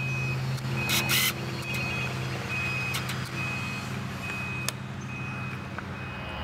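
A vehicle's reversing alarm beeping, one steady high tone about once a second, over a steady low hum. A few sharp cracks cut through, the loudest about a second in.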